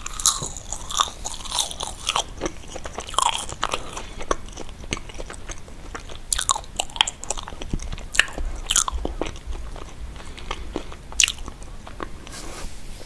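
Mouth chewing a soft, foamy vegan marshmallow: sticky, wet smacking with many irregular sharp clicks.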